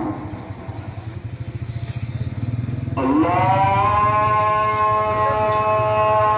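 A voice amplified through a loudspeaker slides up and holds one long drawn-out note from about halfway in, over a steady low hum. The first half is quieter.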